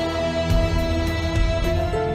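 Background music: a gentle melody with guitar over a steady low beat.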